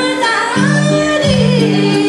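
A woman sings a Nepali folk melody live into a handheld microphone, her voice gliding up and down over instrumental accompaniment with a regular pulse.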